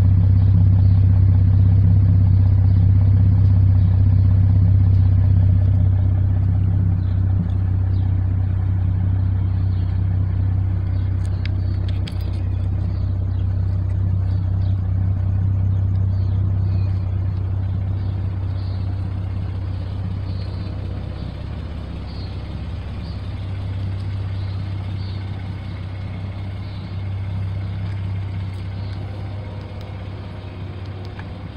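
Ford Mustang S550's 3.7-litre V6 idling steadily through a Flowmaster axle-back exhaust, heard close at the tailpipe and fading gradually from about six seconds in as the listener moves away along the car.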